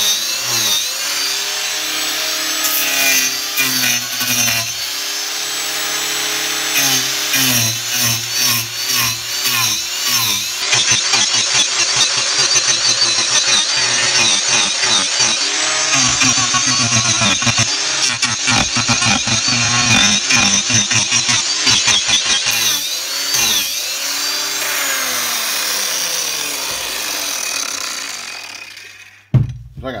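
Cordless angle grinder fitted with an Arbortech TurboPlane carving disc, shaving the edge of a fairly hard log into a chamfer. The motor's pitch dips and recovers again and again as the disc bites into the wood, and it winds down near the end.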